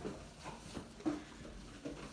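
Fingertips pressing and patting a ball of pizza dough on a floured wooden tabletop: a few faint, soft thumps.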